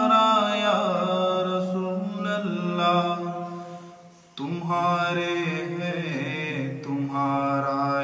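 Men's voices chanting a devotional salawat in long, held, melodic lines. The chant fades a little after three seconds in and cuts back in abruptly at a lower pitch around four and a half seconds in.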